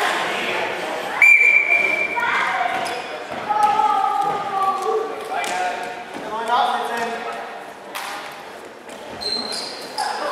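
A referee's whistle blows once, a little over a second in, a steady shrill tone held for about a second to start the wrestling bout. Voices call out in the echoing hall, with a few sharp thuds from the wrestlers grappling on the mat.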